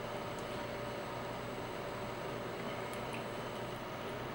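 Steady low background hiss of room tone with a faint hum, and no distinct sounds.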